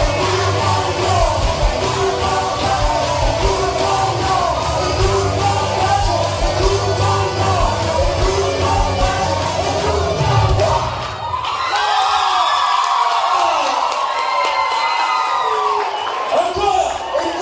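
Live band music with drums, bass and singing playing at a steady beat; about eleven seconds in the band stops and the audience yells and whoops.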